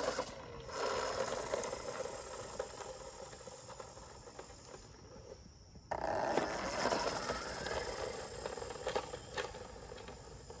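Electric RC car driving on asphalt: a motor and drivetrain whine mixed with tyre noise, dying away. It breaks off suddenly about six seconds in and starts again loud straight after.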